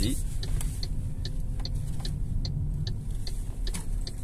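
Cabin sound of an MG5 electric estate moving off at low speed: a steady low road and tyre rumble with a faint steady hum, and light ticks every few tenths of a second.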